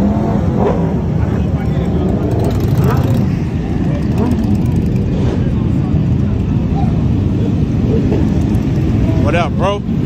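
Several sport motorcycle engines running at a crowded meet. One bike revs up and down twice near the end.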